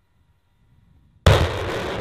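M142 HIMARS launcher firing a rocket: a faint low rumble, then a sudden loud blast a little over a second in, followed by the sustained noise of the rocket motor.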